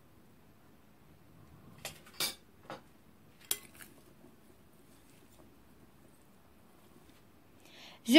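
A metal spoon stirring salad in a glass bowl, clinking against the glass about four times between two and four seconds in, with soft stirring in between.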